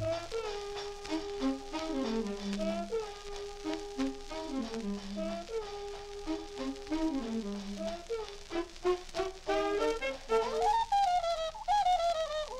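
Swing dance band playing an instrumental passage from a 1939 78 rpm record: a held note dropping into a stepwise falling phrase, repeated three times. A wavering higher line rises near the end, leading into the vocal.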